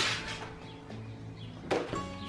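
A laminated plastic placemat being handled and slid onto a glass tabletop: a short rustling, sliding noise as it begins, fading within half a second, and a second brief one near the end. Soft background music plays underneath.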